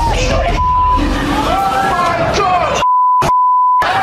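Frightened yelling and screaming voices, cut twice by a steady censor bleep: a short one just under a second in, and a longer one near the end that mutes everything else and breaks off for a moment partway through.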